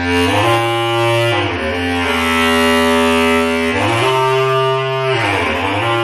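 Bass clarinet in free-jazz improvisation, loud long notes with a rich, buzzy tone. It slides down in pitch about a second and a half in and dips again near the end.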